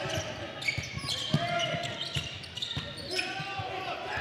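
Basketball being dribbled on a hardwood gym floor, short irregular knocks, over faint voices and crowd noise echoing in a large gym.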